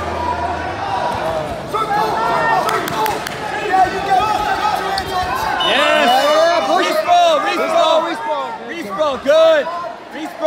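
Coaches and spectators in a gym yelling and cheering over one another as one wrestler takes the other down to the mat, the shouting growing louder about halfway through. A few dull thuds come in the first few seconds.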